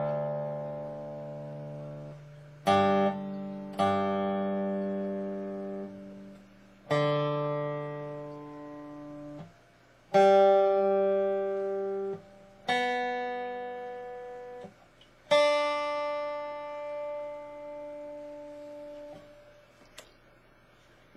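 Resonator guitar in open G tuning (D G D G B D), with notes or chords picked about seven times and each left to ring out and fade over two to four seconds.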